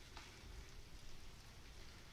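Near silence: faint room tone, with one faint click shortly after the start.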